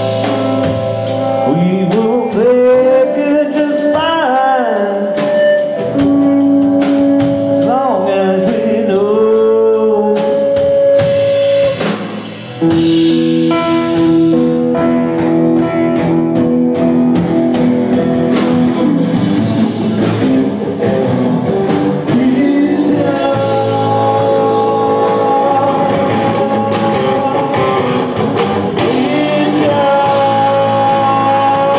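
Live blues-rock band playing: an electric guitar lead with bent, wavering notes over a steady drum-kit beat. The sound dips briefly about twelve seconds in.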